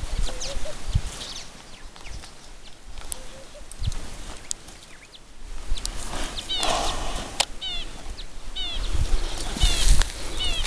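Birds chirping in quick groups of short falling notes, about one group a second, starting just past halfway, over low thumps and rumble at the microphone.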